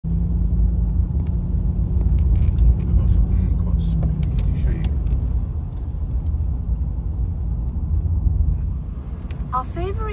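Inside a car driving on a wet road: a steady low engine and tyre rumble, with a level hum for the first few seconds and a few light ticks.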